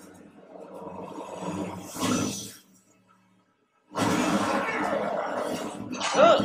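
Film fight-scene soundtrack with a creature's snarling roar building to a loud peak about two seconds in. The sound then cuts out to near silence for about a second and returns as a loud, dense wash of sound effects and score.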